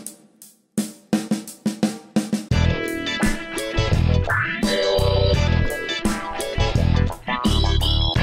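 Background rock music: a few seconds of drums alone, about four or five strokes a second, then bass and electric guitar come in about two and a half seconds in.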